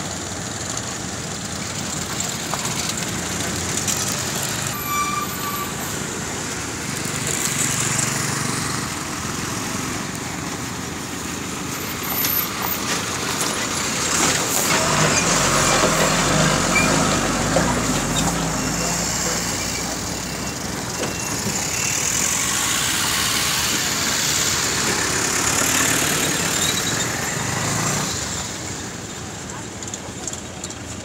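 Vehicles passing on a road, each swelling and fading, the loudest pass about halfway through and another near three-quarters of the way.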